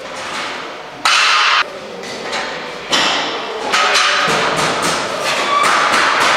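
Shop-fitting work on metal shelving: knocks and hammer blows, with short, abrupt, loud bursts of noise, the first about a second in and another near three seconds, and a quick run of knocks in the second half.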